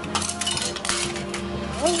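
A hard red plastic cup cracking and snapping as it is twisted apart by hand, a run of sharp cracks and clicks, over quiet background music.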